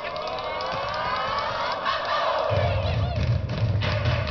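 A crowd of voices shouting and cheering, with long drawn-out cries sliding up and down in pitch. About halfway through, music with a heavy bass beat comes in under them.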